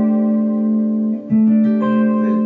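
Clean electric guitar ringing a four-note quartal chord stacked in fourths (open A, D and G strings with the first fret of the B string), struck again about a second and a quarter in and left to sustain.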